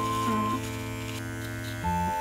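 Small cordless pet trimmer running with a steady electric hum while trimming the fur around a dog's hind paw pad, over background music.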